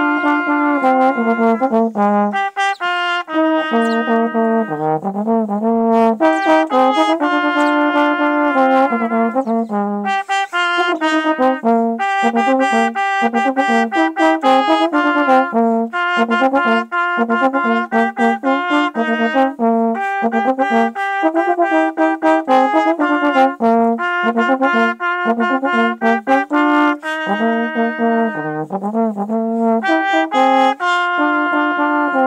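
Trombone playing a practice exercise: phrases of longer held notes at first, then quick runs of short tongued notes through the middle, returning to longer notes near the end.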